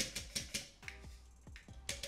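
Several irregular light taps and clicks from a plastic food processor bowl as the last crushed Oreo crumbs are shaken out into a glass bowl, the sharpest at the start and near the end. Background music plays throughout.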